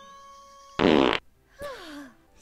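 A loud, brief fart sound effect about a second in, lasting under half a second, over steady held tones; a voice falling in pitch follows near the end.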